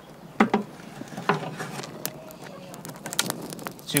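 Open wood fire of dry twigs and branches crackling, with scattered light pops that grow busier toward the end. Two brief voice-like sounds come in the first second and a half.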